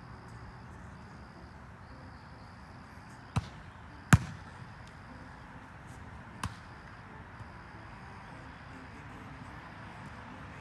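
Volleyball struck by players' hands during a rally: three sharp slaps, the loudest about four seconds in with a quieter one just before it and a third about two seconds later.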